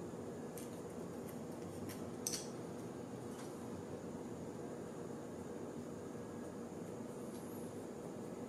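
A few faint clicks and taps of small plastic and metal parts being handled during assembly, the clearest about two seconds in, over a steady low room hiss.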